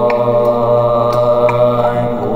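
Live-looped Buddhist mantra chanting: layers of a man's chanting voice built up on a loop station over a steady low drone, with a few light beatboxed clicks.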